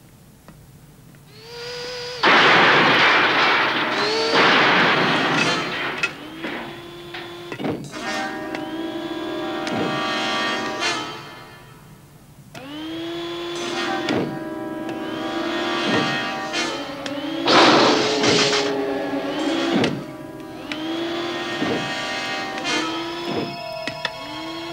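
Electronic synthesizer music and sound effects: loud hissing noise bursts about two seconds in and again near eighteen seconds, over layered sustained tones that slide into pitch and hold, broken by a few sharp thuds.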